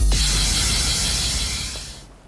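Tail of an edited title-card sound effect: a hit, then a hiss-like noise with a low rumble under it, fading out over about two seconds.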